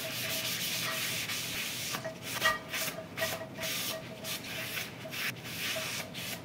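Paper towel rubbing over the inside of a carbon steel skillet, a scrubbing hiss in uneven strokes, as excess flaxseed oil is wiped off to leave a light coat for seasoning.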